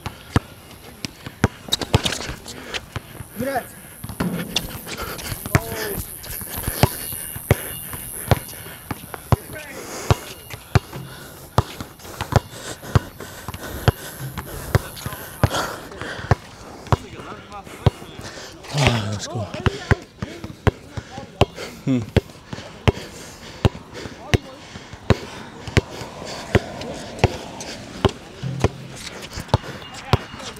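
A basketball being dribbled on a hard court: a long run of sharp, quick bounces at an uneven pace, with a few short vocal sounds between them.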